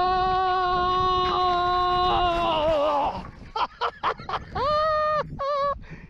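A man's long drawn-out yell, held on one pitch for about three seconds and wavering as it drops, as he tumbles off his bicycle into the snow. Then comes a brief jumble of short sharp sounds and two shorter cries.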